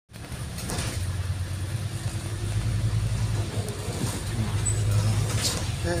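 City double-decker bus engine and drivetrain, a steady low drone heard from inside the bus as it drives in traffic. Two brief clicks are heard, one near the start and one near the end.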